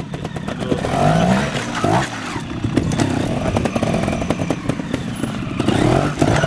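TRS trials motorcycle engine revved in short rising bursts as the bike climbs and hops over rocks, with sharp knocks and clatter of the bike on stone.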